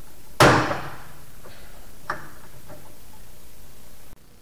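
A loud, sharp metallic snap about half a second in, with a short ringing tail, then a smaller click about two seconds in, from hand pliers worked on metal fittings at the engine.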